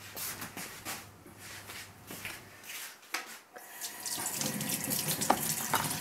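A few light knocks and clicks of handling, then a kitchen tap running into a stainless steel sink from about four seconds in, getting louder, as a freshly gutted sea bream is rinsed under it.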